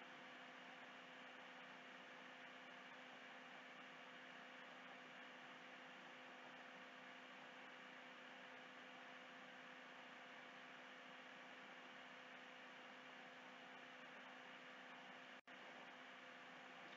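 Near silence: a faint steady hum and hiss, the recording's background noise.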